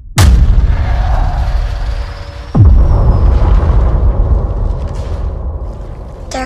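Two deep cinematic boom hits, one just after the start and another about two and a half seconds in with a falling pitch sweep, each trailing off in a long low rumble.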